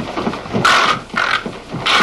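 Young men yelling and whooping in short loud bursts, about two a second, while jumping around dancing.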